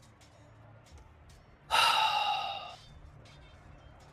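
A person gives one loud, breathy sigh about two seconds in, lasting about a second and trailing off, close to the microphone.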